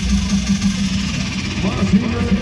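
Fairground ride's loudspeaker sound in a break in the music: a steady, pulsing low hum under a haze of noise, with indistinct voices near the end.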